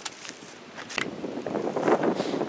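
Wind buffeting the microphone, with rustling handling noise and a single sharp knock about a second in; the rustling grows louder near the end.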